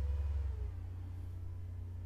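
Low steady background hum, louder for about the first half second, with a faint tone that rises and then falls.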